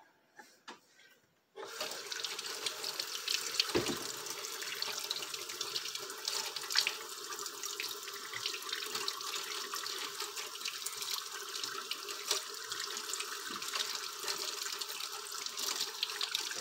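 Kitchen sink faucet coming on about a second and a half in, after a couple of small clicks, then running steadily while a hand is rinsed under the stream.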